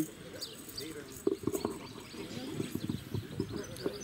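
Faint outdoor background of indistinct distant voices, with a few soft knocks and rustles.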